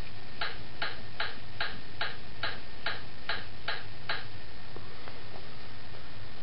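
Bob the Builder talking plush toy playing its hammering sound effect: about ten even hammer taps, roughly two and a half a second, stopping a little after four seconds in.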